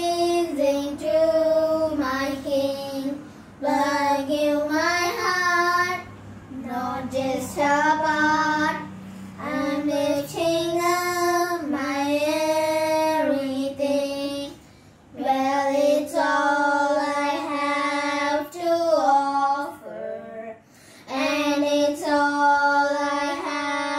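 A girl and a boy singing a children's Sabbath-school song together, unaccompanied, in phrases of held notes with short breaths between them.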